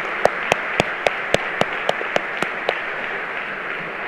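Audience applauding steadily, with one person's sharp claps close by, about four a second, that stop nearly three seconds in.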